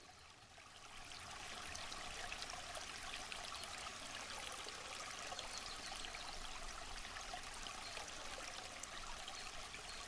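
A faint, steady rushing noise like running water, rising over the first second and then holding level.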